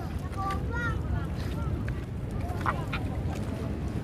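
Wind rumbling on the microphone, with a few brief voice sounds in the first second and a couple of small clicks.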